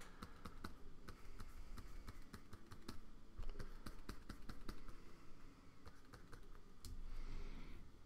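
Computer keyboard keys clicking in a quick, irregular run of keystrokes, with a soft rustle near the end.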